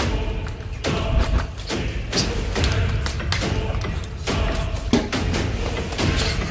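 Repeated thuds and bumps of two people wrestling, their bodies knocking into each other and the furniture, over background music with a low bass.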